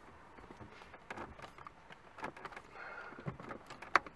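Faint plastic clicks and taps as the removed face of a car's factory stereo head unit is handled and lined up against the dash, with one sharper click just before the end.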